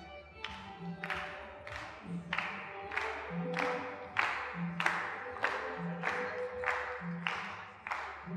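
Hand claps keeping a steady beat, about two a second, over backing music with a repeating bass pattern.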